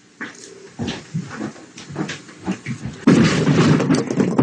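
A wooden bar stool being pulled over and knocked onto its side on the floor, with irregular scuffling and knocks and short vocal sounds from the man handling it; a louder, denser clatter comes about three seconds in.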